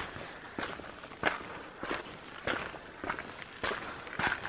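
A hiker's footsteps on a gravel walking track: about six even steps, roughly one every 0.6 seconds.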